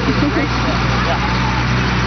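An engine idling with a steady low hum under faint voices of people talking nearby.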